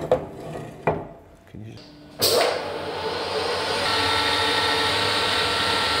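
A few sharp workshop knocks, then about two seconds in a metal lathe starts up and runs steadily, with a thin steady whine joining in near the middle.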